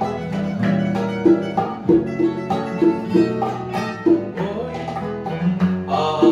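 Bolero music played on guitars, a bright lead guitar picking out a melody note by note over the accompaniment.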